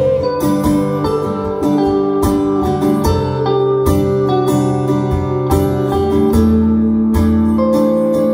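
Live acoustic and electric guitars playing together, with strummed chords and sustained ringing notes that change every second or so.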